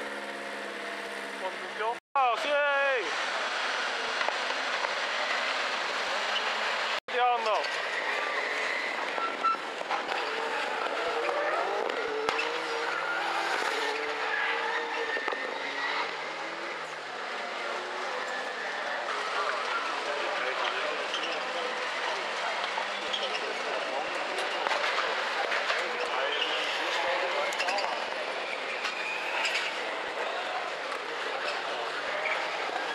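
Rallycross Supercar engines revving hard and running at full throttle as several cars race together, with rising revs after two abrupt cuts in the sound early on.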